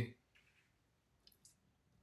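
Two faint, short clicks close together, about a second and a half in, against near silence.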